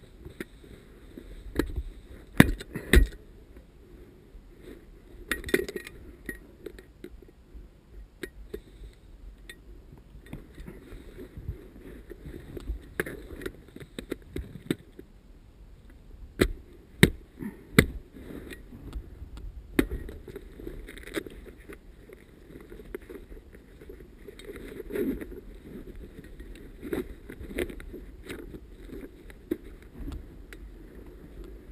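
Rustling of tall dry grass and brush against clothing and gear, with scattered sharp clicks and knocks from handling a plastic airsoft replica and its fittings.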